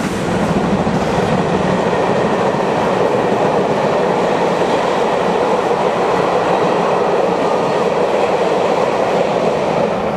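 Rake of passenger coaches behind a steam locomotive running past at speed: a steady rumble and clatter of wheels on the rails.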